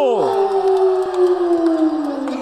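A commentator's long drawn-out shout, held on one note and slowly sliding down in pitch, over a crowd cheering.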